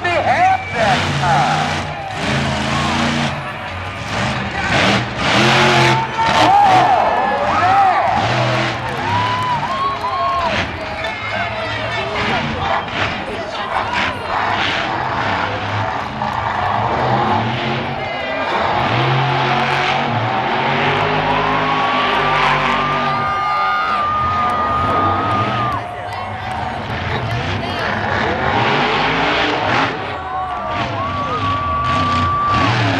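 Monster truck engine revving hard during a freestyle run, the revs rising and falling over and over, with sharp knocks mixed in.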